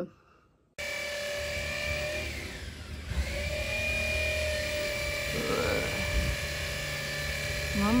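A steady mechanical whine over a low rumble, like a small motor running, with its pitch dipping briefly about two and a half seconds in. It starts suddenly about a second in, after near silence.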